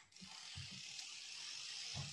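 Faint handling noise from a book and handheld microphone: a soft, steady rustle with a few soft low knocks in the first second.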